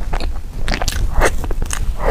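Close-up chewing and biting into a soft chocolate mousse-filled pastry: a run of short, wet mouth clicks and smacks, several a second.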